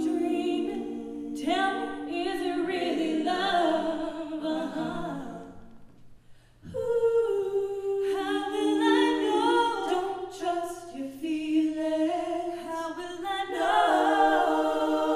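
A cappella vocal ensemble of female and male voices singing sustained harmonies, breaking off briefly about six seconds in before coming back in together.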